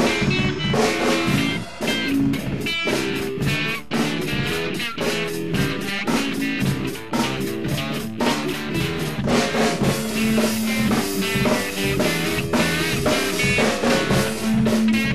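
Band music with a drum kit keeping a steady beat under guitar.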